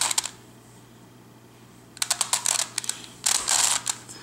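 Plastic Circle Crystal Pyraminx twisty puzzle being turned by hand: quick runs of clicking and rattling as its layers turn, one at the start and two more close together in the last two seconds.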